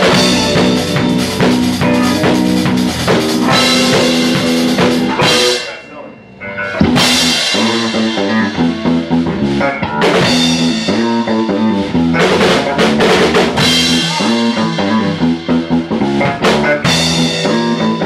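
A rock band playing together: drum kit, electric guitars, bass guitar and keyboard. The music drops out for about a second around six seconds in, then the whole band comes back in.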